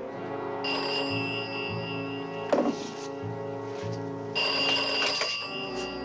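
Desk telephone bell ringing twice, each ring about two seconds long with a pause between, over the film's background music.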